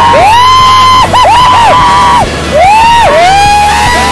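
People whooping and yelling: a string of long, high cries that rise, hold and fall, some overlapping, several in a row.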